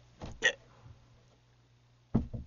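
A brief vocal grunt, two short sounds in quick succession about a quarter to half a second in, then quiet with a faint steady hum.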